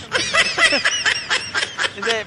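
A person laughing: a quick run of short, high-pitched bursts.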